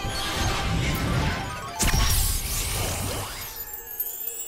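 Cartoon spell-casting sound effects over music: a shimmering, sweeping effect with a loud crash about two seconds in.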